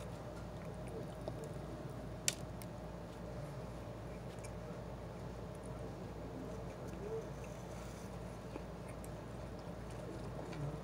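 A man quietly chewing a bite of donut, over a steady low room hum, with one sharp click about two seconds in.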